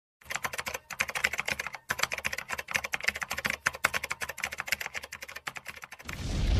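Keyboard typing sound effect: a rapid run of key clicks, with brief pauses about one and two seconds in, accompanying on-screen text being typed out.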